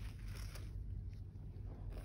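Low steady hum with a few faint taps and light handling as a brush loaded with hot wax is lifted from the wax pot and drawn onto the cotton.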